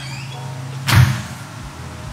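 A door swinging shut with a single thud about a second in, over a steady low hum.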